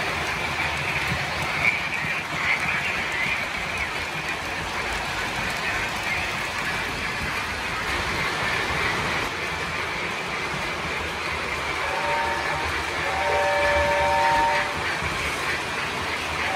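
Lionel O-scale model trains running on three-rail track, a steady rolling rumble of wheels and motors. Near the end a locomotive's electronic steam whistle sounds twice, the second blast longer.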